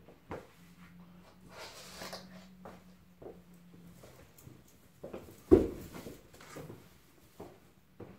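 Sneakered footsteps and clothing rustle on a laminate floor as a person walks off, with one loud heavy thump about five and a half seconds in.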